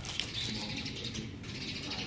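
Small birds chirping in short repeated calls over low background rumble, with a light handling click a fraction of a second in.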